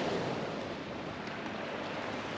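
Steady wash of sea surf and wind, with some wind noise on the microphone.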